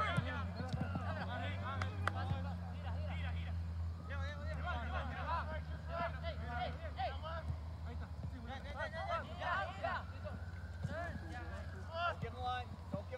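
Indistinct shouts and calls of players and spectators across an open soccer field during play, with no clear words, over a steady low hum.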